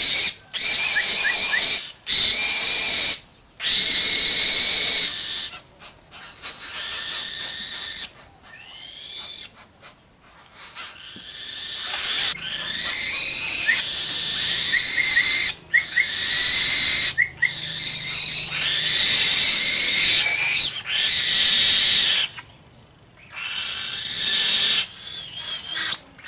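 Young black-winged kite screeching: repeated hoarse, wheezy calls a second or two long, with a few short chirps between them, as it waits to be fed.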